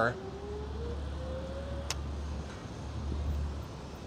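Rear hub motor of a sixthreezero e-bike whining as the throttle is tapped, its pitch rising slowly for about two seconds and stopping with a click. A steady low rumble runs underneath.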